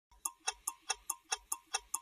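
A clock-like ticking sound effect, nearly five even ticks a second, starting just after a brief silence. It is the opening of a broadcaster's end-logo ident.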